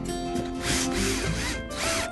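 A cordless drill driving screws into plywood in two short runs, the first starting about half a second in and lasting about a second, the second near the end, its motor pitch sweeping up and down. Background music plays throughout.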